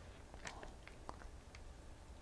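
Bible pages being leafed through by hand: a few faint, scattered papery rustles and small ticks.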